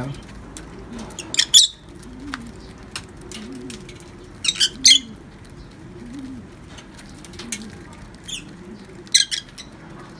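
Domestic pigeons cooing, a low rising-and-falling call repeated about once a second. Loud sharp clicks of beaks pecking grain from a hand come in short clusters a few seconds apart.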